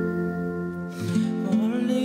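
Music: the instrumental backing track of a slow ballad, with long held notes.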